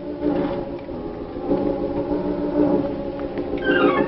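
Dramatic organ music underscore: held low chords, with a quick falling run near the end.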